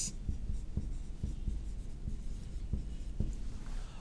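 Marker pen writing a word on a whiteboard: faint strokes with small irregular taps.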